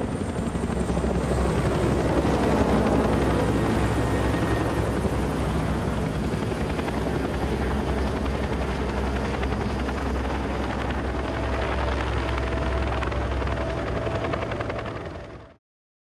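Helicopter flying with its rotor and engines running, a steady low rumble that cuts off suddenly near the end.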